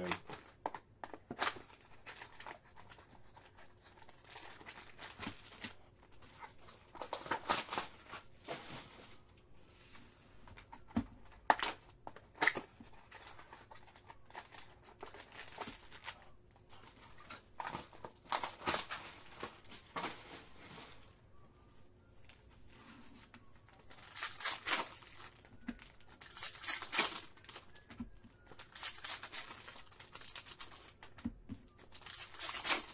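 Foil wrappers of baseball card packs being torn open and crinkled, in repeated short bursts every few seconds, with small clicks and taps of cards being handled in between.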